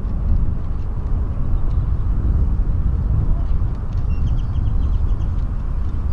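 A steady low outdoor rumble with a bird's quick run of about eight high chirps a little after four seconds in.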